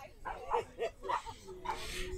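A dog yipping faintly, about three short calls in the first second or so, with faint voices around it.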